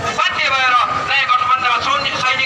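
Speech: a person talking continuously, loud and clear.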